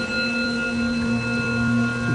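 Steady musical drone of several held notes under a devotional chant, heard in the pause between verses, with a lower note joining about halfway through.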